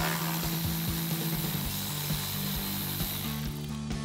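Cordless electric ratchet with an 8 mm socket spinning a bolt out, a steady whir that stops about three and a half seconds in.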